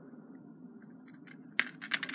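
Jewellery wire cutters snipping through thin craft wire, a single sharp snip about one and a half seconds in after a quiet stretch.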